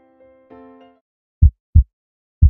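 Soft keyboard music that fades out about halfway, then a loud double heartbeat sound effect, two short deep thumps in quick succession near the end.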